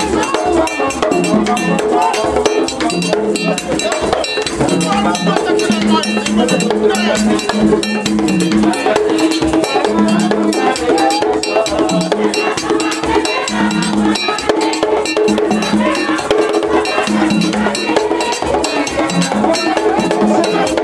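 Vodou ceremony music: drums and a struck bell keep a dense, even rhythm under group singing held on long notes.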